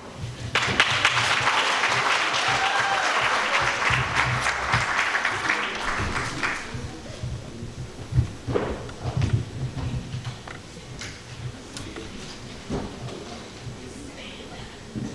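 Audience applause, dense for about six seconds and then dying away, followed by scattered knocks and thumps.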